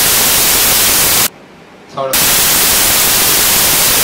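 Loud static hiss across the whole sound range, breaking off abruptly for under a second in the middle, where a faint voice comes through, then cutting back in.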